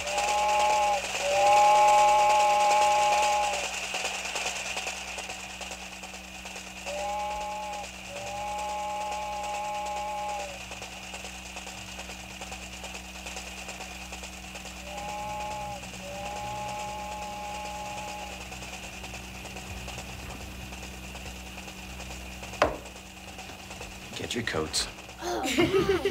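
Train horn sounding a short blast followed by a long one, three times over, each blast a chord of several notes and each pair fainter than the last. Under it runs a steady low hum with a hiss, and a single sharp click comes near the end.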